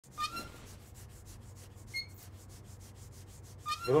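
Shoe being brushed by hand: faint, quick, evenly repeated rubbing strokes, several a second. Short high-pitched tones break in near the start, about two seconds in, and just before the end.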